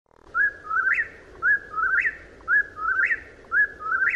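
A whip-poor-will calling its name four times in a row, about one call a second, each three-note call ending on a rising, higher note.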